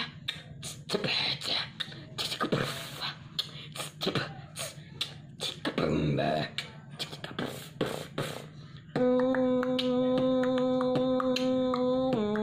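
Robotic-style vocal beatboxing through a hand cupped over the nose and mouth: a quick run of clicks and percussive mouth beats, then, about nine seconds in, a loud steady buzzing held tone with light clicks over it, which steps down a little in pitch at the very end.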